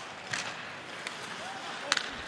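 Ice hockey arena ambience: a steady crowd murmur, with a sharp crack of a stick on the puck just before the end and a fainter click early on.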